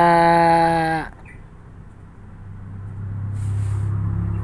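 A man's voice holding a long, steady hesitation vowel for about a second before it drops off. Then a low rumble swells up, loudest near the end.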